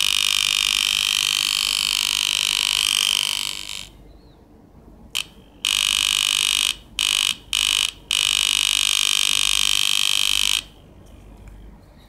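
A 7400 NAND-gate oscillator circuit sounding a steady, high-pitched alarm tone through a small speaker. The tone sounds for about four seconds and cuts off. It then comes back in a few short stuttering bursts and a longer stretch before stopping about a second before the end.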